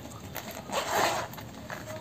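A short rasping scrape of hard plastic against a helmet shell, about half a second long and about a second in: an action-camera mount being handled and fitted onto a motorcycle helmet.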